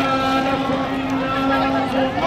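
Protest chanting: one voice holds a long, steady note over crowd noise.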